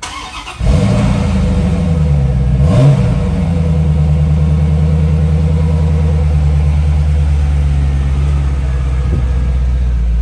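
1995 Chevrolet Corvette's V8 cranked by the starter for about half a second, then catching and starting. It gets one quick rev about three seconds in, then settles into a steady fast idle that drops slightly near the end.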